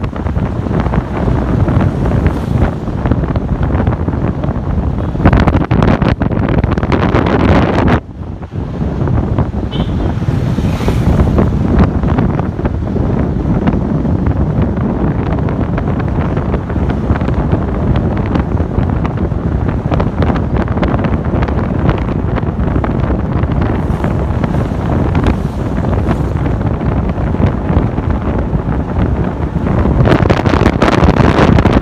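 Wind buffeting the microphone: a loud, steady low rushing noise with a brief dip about eight seconds in.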